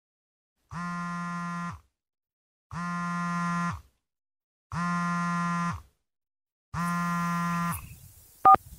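Phone ringing: four buzzy electronic ring tones about a second long, one every two seconds, with complete silence between them.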